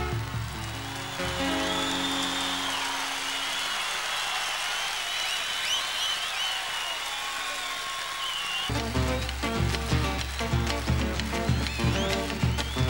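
Crowd applauding and whistling over a held guitar chord as the singing ends. About nine seconds in, the folk band comes back in with a steady bass-drum beat and guitars.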